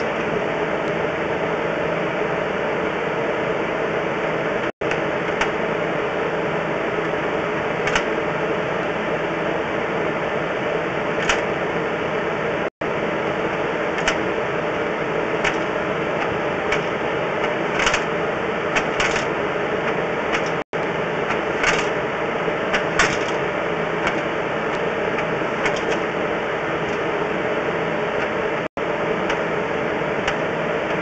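A steady machine-like hum with scattered light clicks and ticks, cut by a brief dropout to silence about every eight seconds.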